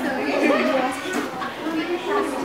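Several girls' voices talking and chattering over one another in a classroom, with no single clear speaker.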